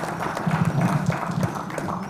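Audience applauding: many hand claps, irregular and overlapping.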